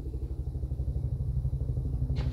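A low, steady rumble with an even fast pulse, about ten beats a second, from an engine idling.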